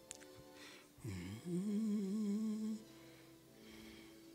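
Soft instrumental music of steady held notes. About a second in, a single voice hums over it: a low swooping note that rises and then holds with a wavering pitch for nearly two seconds, the loudest sound here.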